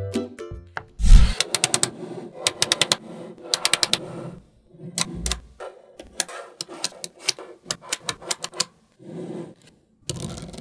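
Small magnetic balls clicking and snapping together as they are laid and pressed into rows, in quick clusters of sharp clicks. The loudest snap comes about a second in.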